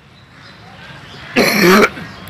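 A man coughing once, a short, loud, rough burst about one and a half seconds in, over faint background noise.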